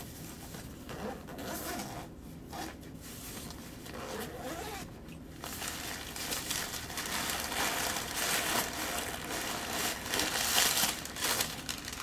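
A backpack zipper being pulled open around the main compartment, then fabric and packing paper rustling as the compartment is opened out. The rustling grows louder and denser from about halfway through.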